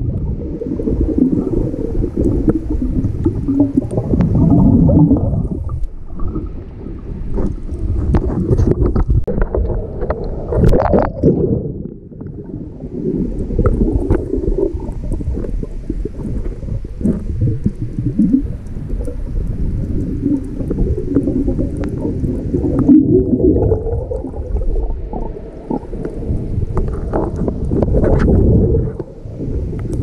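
Underwater sound of a scuba diver breathing through a regulator: exhaled bubbles gurgling and rumbling in surges several seconds long, with short lulls between breaths.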